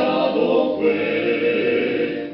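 Male vocal quartet singing in close harmony through microphones, holding one chord and moving to the next about a second in.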